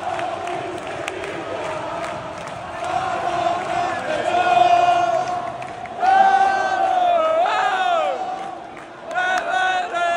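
Football crowd chanting and singing together in celebration of a goal, in long held notes, with men close by singing and shouting loudly along. The nearby voices are loudest from about six seconds in.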